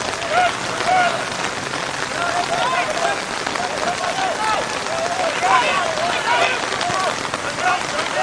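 Steady rain falling, with many short, scattered voice calls over it.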